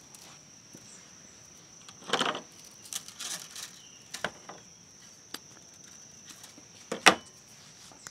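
Scattered rustles and light clicks of bonsai wire and ficus branches being handled while wire is put on, with a sharp click near the end. A steady high-pitched insect call sounds underneath.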